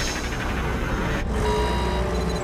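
TV sound effect of the shrunken Waverider time ship flying past: a dense rushing engine-like hiss that cuts off sharply just over a second in. Held musical tones from the score follow.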